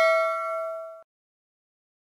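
The last bell-like chime of an outro jingle ringing on, several tones sounding together and fading, then cut off suddenly about halfway through.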